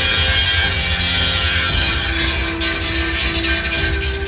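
Angle grinder's cutting disc biting into sheet steel, a loud, harsh, continuous hiss that thins out a little about two and a half seconds in. Background music with sustained notes plays under it.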